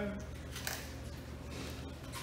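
Knife cutting a red drum fillet along the backbone, the blade scraping through flesh and over bone, with a short scrape about two-thirds of a second in.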